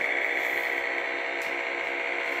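Electronic engine sound from a Milton Bradley Star Bird toy spaceship: a steady high electronic tone with a quick, even pulsing underneath.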